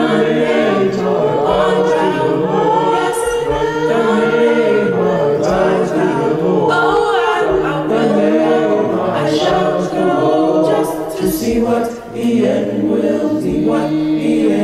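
Youth choir singing a cappella in several-part harmony, with a short break between phrases about twelve seconds in.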